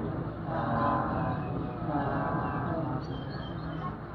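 A monk's voice chanting in a steady, held monotone, the notes drawn out rather than spoken, fading toward the end.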